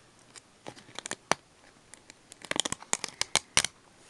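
A sheet of silver peel-off stickers being handled while a sticker is picked off it: scattered small crackles and clicks, a few at first, then a quick run of them in the second half.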